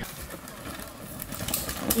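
Mountain bike rolling down a rooty dirt trail toward the listener, a steady rush of tyre and ground noise with a few sharp knocks near the end as it rattles over roots.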